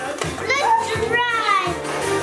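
Young children's high-pitched voices and excited vocal sounds, over steady background music.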